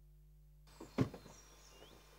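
A car door slamming shut about a second in, with a smaller knock just before, over faint outdoor ambience with birds chirping.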